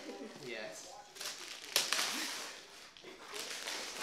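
Gift wrap tearing and rustling as a wrapped cardboard box is pulled open, with a sudden loud rip a little under two seconds in, over quiet talk.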